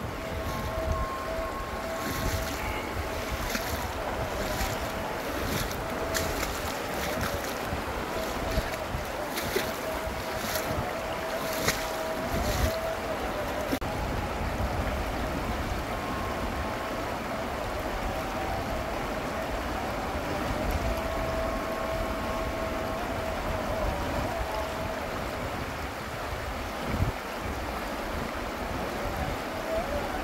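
Fast-flowing shallow river rushing over rocks, a steady wash of water noise, with wind buffeting the microphone. A faint steady tone comes and goes in the background.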